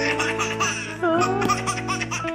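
A toddler laughing in a quick run of short giggles, over background music with steady held tones.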